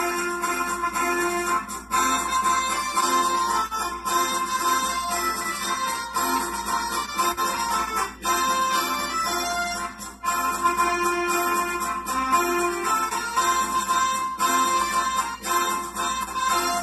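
Electronic keyboard played by a child, a melody of held notes one after another.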